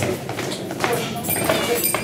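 Dancers' shoes striking a hard floor in a quick series of hops and landings as they practise galliard steps, with a voice counting the beat.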